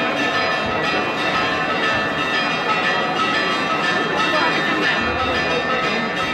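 Church bells ringing continuously in a festive peal, over the steady chatter of a large crowd.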